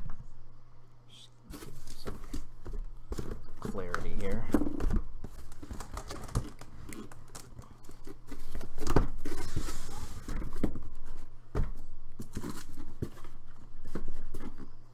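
Cardboard trading-card boxes being worked out of a tightly packed cardboard case: scattered knocks and scraping as the boxes rub and bump against the case, over a steady low hum. A muttering voice or squeak is heard in places.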